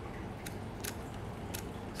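A few light, sharp clicks from hands handling a Canon F-1 film camera body, spaced unevenly over a low steady background noise.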